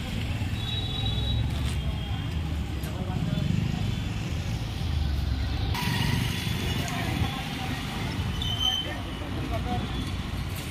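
Busy street market ambience: a steady low rumble of road traffic and motorcycles under indistinct crowd chatter.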